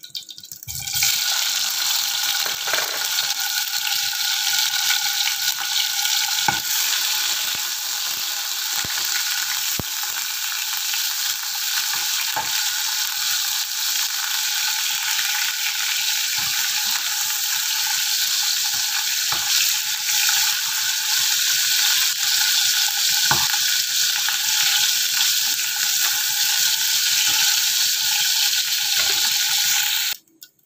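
Paneer cubes sizzling in hot oil in a nonstick frying pan: a steady, loud sizzle that starts about a second in as the cubes go into the oil. Scattered sharp clicks of a slotted spatula turning the cubes against the pan.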